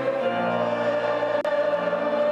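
Choral music: a choir holding sustained chords, moving to a new chord about a third of a second in. A brief click cuts through about one and a half seconds in.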